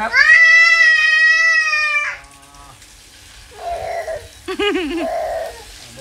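Toddler girl crying: one long, high wail lasting about two seconds, then a few shorter, wavering sobs.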